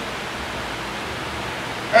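A steady, even hiss of room noise in a pause in a man's talk. His voice comes back at the very end.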